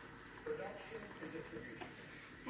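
A faint, low voice murmuring, and a single sharp click near the end.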